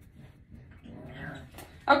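A puppy making faint vocal sounds while playing with its toys, strongest about a second in.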